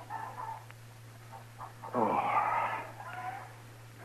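A man's long breathy sigh of relief, under a second long, about two seconds in, over the steady low hum of an old radio recording.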